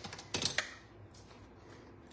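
A few light clicks and knocks of craft supplies being picked up and set down on a tabletop while clearing the work area, bunched about half a second in.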